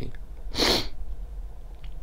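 A single short, sharp, hissy breath noise from a person, lasting about a third of a second, about half a second in.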